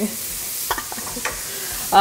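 Steady sizzle of food frying in a pan on the stove.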